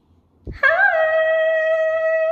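A woman's voice holding one long sung note, scooping up into it just over half a second in and then holding the pitch steady, in a small tiled bathroom. A short low thump comes just before the note.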